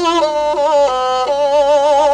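Qyl-qobyz, the Kazakh bowed fiddle with horsehair strings, playing a solo melody that steps from note to note, with a wide vibrato on the longer held notes.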